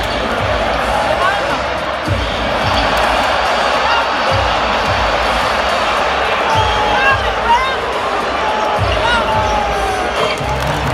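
Basketball arena crowd din during live NBA play, with a basketball being dribbled on the hardwood court in a steady run of low bounces and sneakers squeaking near the end.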